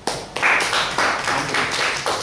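Group of people applauding. The clapping starts abruptly and swells about half a second in.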